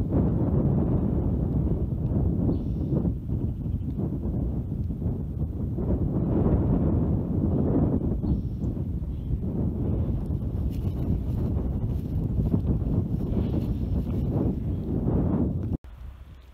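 Wind buffeting the microphone: a loud, gusting low rumble that cuts off suddenly near the end.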